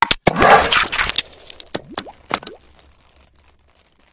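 Animated-logo intro sound effects: a sharp click, then a loud noisy burst lasting about a second, followed by a few sharp pops with short rising tones about two seconds in, dying away.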